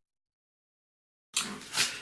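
Total digital silence for about the first second and a half, the dead gap at a splice between two recordings. Then faint room hiss comes in, and a man starts to speak near the end.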